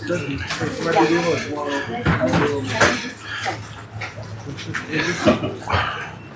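People talking, with a few short sharp clicks or knocks among the voices.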